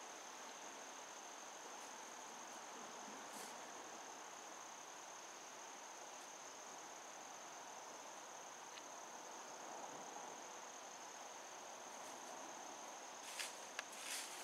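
Crickets chirring in one steady, high-pitched drone, faint against a quiet woodland background. A couple of brief rustles come near the end.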